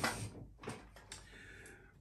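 Faint handling noise: a few soft clicks and taps, about half a second and a second in, as a small tool is picked up from a desk beside a cardboard box.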